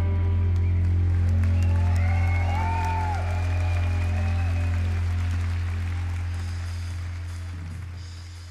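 Live rock band's closing music: a held low bass drone with a few sliding higher tones in the middle, fading out steadily over the last few seconds.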